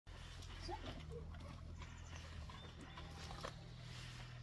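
Faint sounds of a dog searching on wooden boards: sniffing and scattered light taps and clicks of its paws, over a steady low hum.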